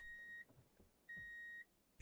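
Two faint electronic beeps, each about half a second long and at the same steady pitch: one at the start and one about a second later.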